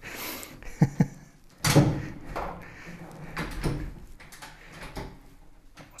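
Bathroom vanity cabinet under a washbasin being handled: a knock about a second in, a louder bang near two seconds as its front is pulled or shut, then rubbing and shuffling.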